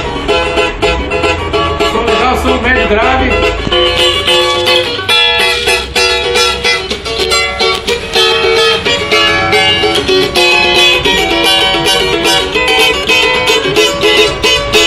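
Solid-top cavaquinho strummed continuously, chords ringing out in quick, even strokes.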